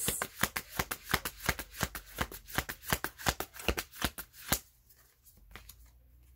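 A deck of tarot cards being shuffled by hand: a quick run of papery clicks, about six or seven a second, stopping about four and a half seconds in.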